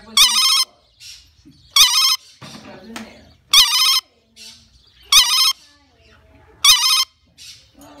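A red lorikeet mimicking a telephone ringing. It gives five short, warbling rings about every one and a half seconds, with quieter sounds between them.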